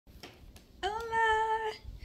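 A woman's voice holding one high, steady wordless note for about a second, starting a little before the middle.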